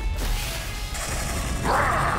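Cartoon magic sound effect: a sharp hit at the start, then a loud rushing swell near the end as a swirling purple magic whirlwind appears.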